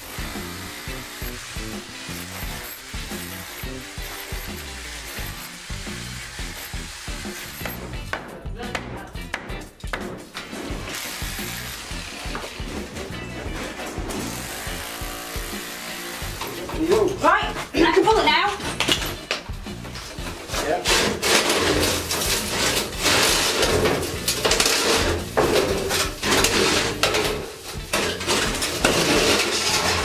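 An SDS hammer drill chipping mortar off old brickwork, under background music. In the later part there is louder, clattering metallic scraping as a flexible flue liner is pulled out among loose bricks.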